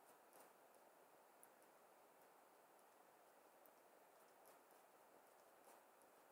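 Near silence: faint room hiss with a few faint, short clicks scattered through it.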